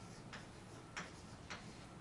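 Chalk writing on a blackboard: three faint, sharp taps of the chalk against the board, roughly half a second apart.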